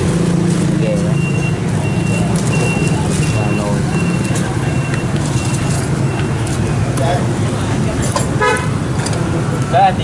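Steady low hum of street traffic, with a high electronic beep repeating about twice a second for some five seconds. A brief ringing clink comes near the end.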